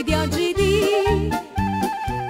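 Romagnolo liscio dance-band music: a quick, ornamented accordion and clarinet melody over a steady oom-pah bass-and-chord beat, about two beats a second.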